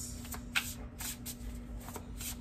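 A deck of tarot cards being shuffled by hand, a handful of short card slaps at irregular intervals.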